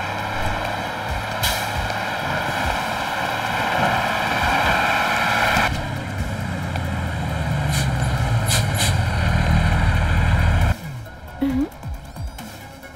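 Heavy lorry sound effects as a truck is stopped: a loud rushing noise for the first half gives way to a deep engine rumble with a few sharp knocks, cut off abruptly near the end, over background music.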